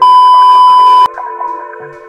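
A loud, steady single-pitch beep tone lasting about a second, cutting off sharply, over electronic background music.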